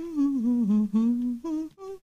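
A person humming a tune: a few held notes that dip and rise again, then two short notes near the end.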